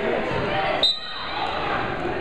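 Referee's whistle, one short sharp blast about a second in that starts a wrestling bout, over the chatter of a gym crowd.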